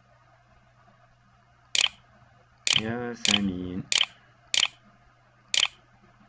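Six sharp clicks, unevenly spaced, one for each letter of a six-letter Arabic word typed by mouse on a computer's on-screen keyboard. A short murmured voice comes between the second and fourth clicks.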